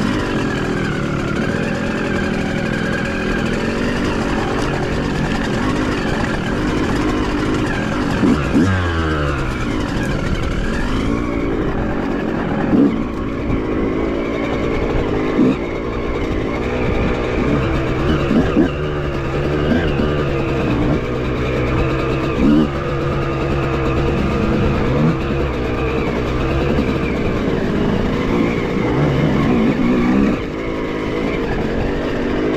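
Small-capacity two-stroke enduro dirt bike engines riding a rough off-road track, the revs rising and falling with short throttle blips every couple of seconds.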